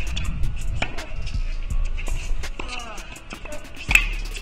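A tennis rally on a hard court: sharp racket-on-ball strikes and short sneaker squeaks, over background music. The loudest strike comes just before the end: a sliced backhand.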